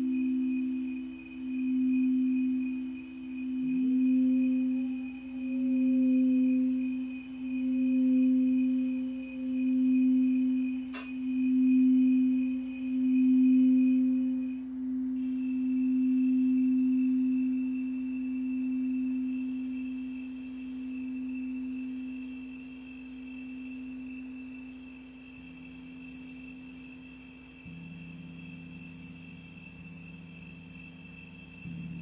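Quartz crystal singing bowl ringing in one pure, sustained low tone that pulses in slow waves and gradually fades. A second, higher bowl tone swells in a few seconds in and dies away about halfway, and a single sharp click sounds near the middle.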